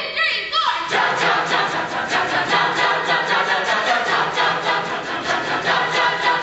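High-school a cappella ensemble singing together in many-voiced harmony, coming in all at once about a second in, with a steady beat running under the voices.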